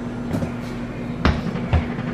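Microwave oven running with a steady low hum, with a few short knocks over it.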